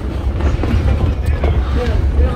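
Wind buffeting a phone's microphone outdoors, a steady low rumble, with a faint voice near the end.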